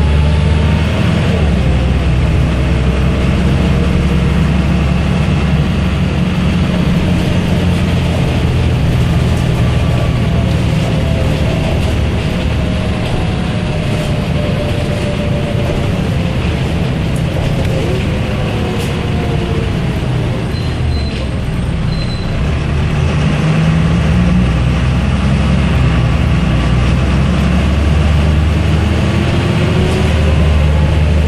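MAN NG272 articulated city bus heard from inside the passenger cabin while driving: a deep, steady engine drone with a faint whine that glides up and down with speed. The sound eases off slightly about two-thirds of the way through, then builds again as the bus picks up.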